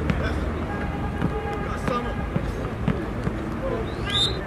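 Footballs being headed and kicked during a training warm-up, with several short thuds of ball on head and foot scattered through, among players' voices calling out.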